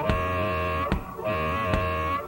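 Live blues-rock band playing an instrumental passage: held, slightly wavering chord notes over bass, with a drum hit about once a second.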